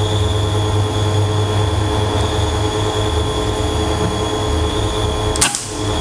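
A steady low mechanical hum runs until one sharp shot from the Bocap FX Crown PCP air rifle about five and a half seconds in, after which the hum stops.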